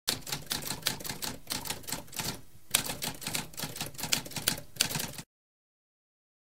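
Typewriter keys clacking in quick succession, with a brief pause about halfway and a louder strike just after it; the typing cuts off suddenly about five seconds in.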